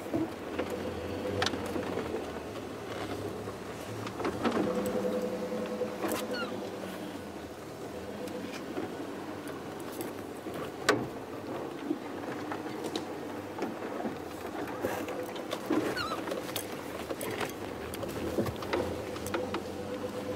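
Safari vehicle's engine running as it drives slowly along a rough dirt track, with scattered knocks and rattles from the body over the bumps.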